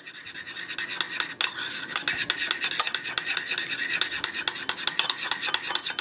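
Metal spoon beating a raw egg in a ceramic bowl: a rapid, continuous run of scraping clicks against the bowl, each with a light ringing tone.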